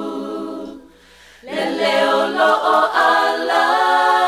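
Unaccompanied choir singing. A held chord fades out, the voices pause briefly about a second in, then come back in louder.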